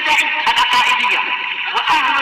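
A voice in Arabic with a wavering pitch, sounding thin and tinny, with frequent clicks and crackle through it.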